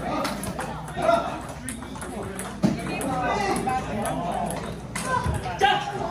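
Table tennis ball clicking off paddles and table in a few sharp strikes, with people talking.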